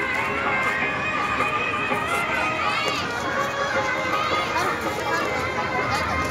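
Crowd hubbub: many people talking at once, with a few higher voices calling out over a steady background of chatter.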